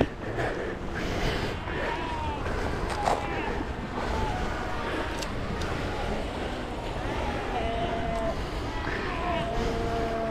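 Wind and surf on the microphone, with Cape fur seals calling from the colony behind. Their bleats come briefly a couple of times early and then as longer, steady calls in the second half.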